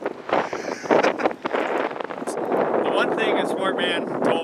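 Gusty wind buffeting the microphone, with an indistinct voice talking near the end.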